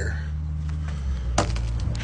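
Steady low hum with one sharp click about one and a half seconds in, as the opened plastic cleanup-kit case and its contents are handled.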